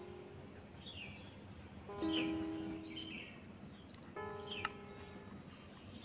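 Soft background music: held instrument notes come in about two seconds in and again just after four, with short falling bird chirps about once a second. There is one sharp click just after four and a half seconds.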